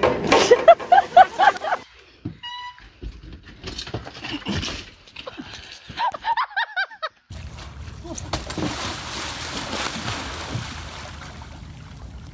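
People yelling and laughing for the first few seconds. Then, from about seven seconds in, a steady rush of splashing water as a person flounders in open water.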